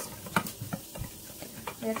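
Wire whisk beating egg yolks and cornstarch in a small stainless steel bowl, the wires clicking and scraping against the metal in irregular strokes, with a sharp click about a third of a second in. The cornstarch is being dissolved into the yolks.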